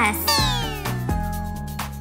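A comic sound effect that slides down in pitch for about a second, played over background music with a steady bass line.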